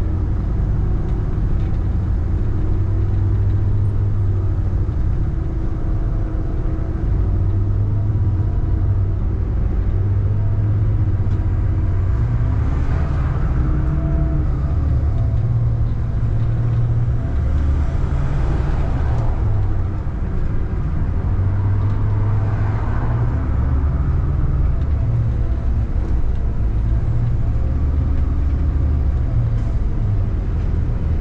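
Steady low engine rumble and road noise of a city bus driving in traffic, with wavering engine tones as it speeds up and slows. Three swells of rushing noise rise and fall partway through.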